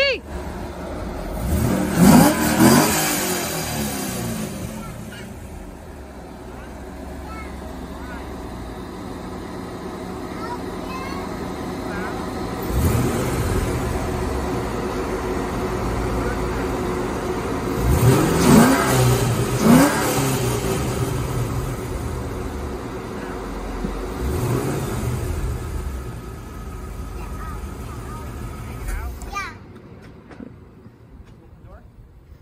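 2004 Corvette Z06's 5.7-litre LS6 V8 starting at the very beginning, idling, and revved in quick blips about half a dozen times. It is shut off near the end.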